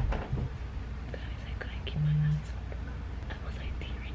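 Faint whispering, with a short low hum about two seconds in.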